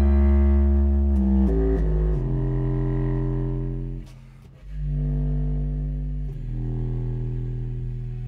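Eppelsheim contrabass clarinet playing deep, long-held notes in chamber music: a phrase stepping downward in the first two seconds, a short break about four seconds in, then further long low notes.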